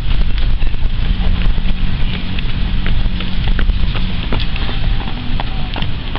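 Wind buffeting the microphone as a steady low rumble, with irregular light clicks of runners' footsteps on the asphalt path.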